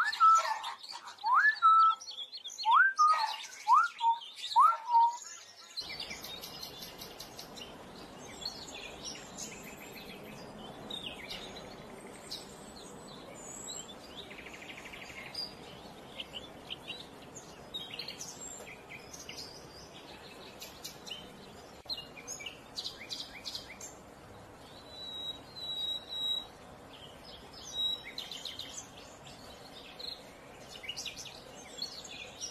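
Common hill myna giving a series of loud whistles, each sweeping sharply upward in pitch, about seven in the first six seconds. After that, a steady outdoor background with scattered high, short bird chirps.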